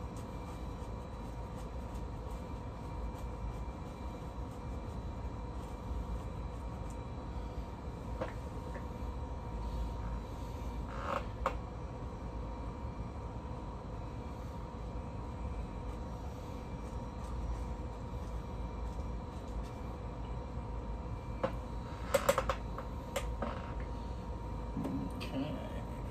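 A steady low room hum with a faint whine, over the soft scrape of a paint brush working on canvas. A few sharper clicks and knocks come near the end.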